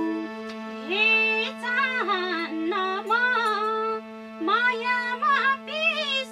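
A woman singing a Nepali dohori folk verse in sliding, ornamented phrases over a steadily held harmonium drone.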